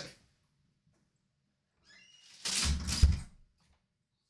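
A room door being pushed shut: a faint squeak about two seconds in, then a low thud and a sharp latch click a moment later.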